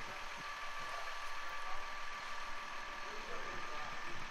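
A concrete pump truck's engine idling steadily in the background, with a thin, steady high whine over it.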